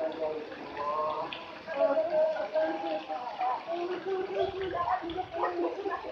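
Children's voices calling and chattering over the steady rush of pool water.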